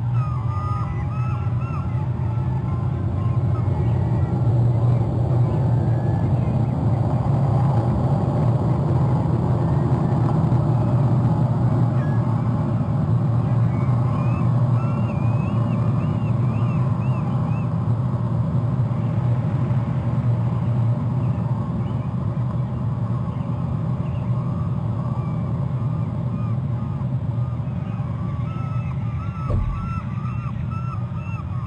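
A steady low engine drone, louder through the middle, with short runs of high chirping bird calls coming and going over it.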